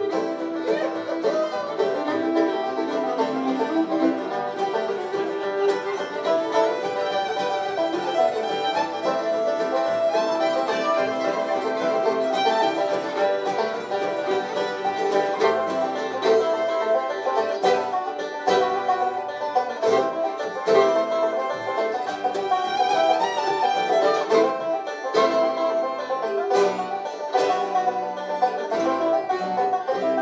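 Live acoustic bluegrass band playing an instrumental break without singing: fiddle, banjo, mandolin, acoustic guitar and upright bass together, at a steady driving tempo.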